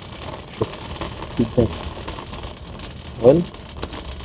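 Wire shopping cart being pushed across a hard store floor: a steady rolling rattle from its wheels and basket.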